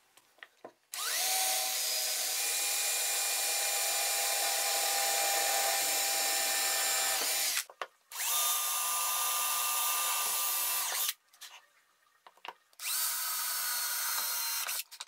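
Cordless drill boring holes through an acrylic plate, running at a steady whine in three bursts. The first lasts about six seconds and starts a second in, the second lasts about three seconds, and the third starts near the end.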